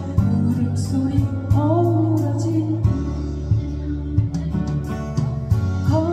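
A woman singing a slow melody to her own strummed acoustic guitar, which has a capo on the neck.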